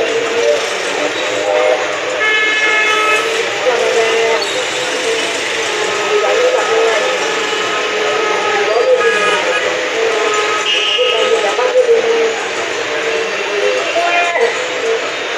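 Loud, steady street traffic noise with a babble of voices and wavering engine tones. Horn blasts sound about two and a half seconds in and again near eleven seconds.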